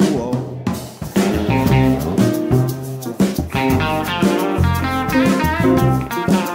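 Live band playing an instrumental break: a hollow-body electric guitar takes the lead over drum kit, upright bass and piano.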